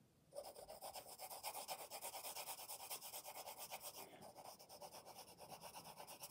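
Graphite pencil held flat in a side grip, shading on paper: faint, fast back-and-forth scratchy strokes, several a second, starting a moment in and growing softer in the second half.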